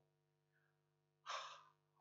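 Near silence, then one short, sharp intake of breath by a man about a second and a half in.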